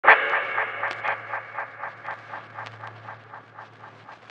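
Logo intro sound effect: a sharp opening tone that repeats about four times a second as it fades away, like an echo dying out, over a low steady hum.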